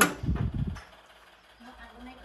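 A single sharp click right at the start, followed by low, faint room tone.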